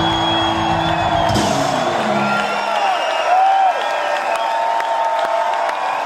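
A rock band's final held chord on electric guitars and drums rings out and stops about two seconds in. A concert crowd then cheers and whoops.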